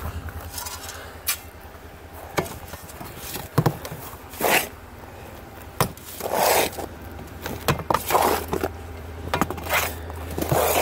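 Steel shovel digging and scraping through a damp mix of sand, ash and dirt in a plastic wheelbarrow. The strokes are irregular: longer gritty swishes broken by a few sharp clicks of the blade.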